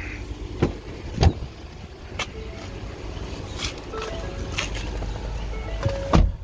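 A 2017 Ford Explorer's driver door being opened and someone getting into the seat: a latch click, then a louder knock and scattered thumps and handling noises, with a few short chime tones from the cabin and a heavier thump at the very end.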